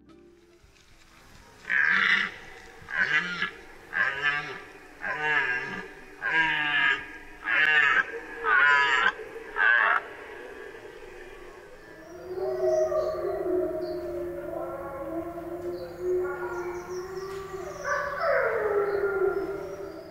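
Wild animal calls: a run of about eight short, high calls, roughly one a second, then a long, lower, wavering howl-like call that falls in pitch near the end.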